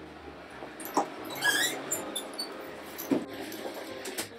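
Footsteps on a hard floor: a couple of knocks and one short, rising squeak of a shoe sole, over a steady low room hum.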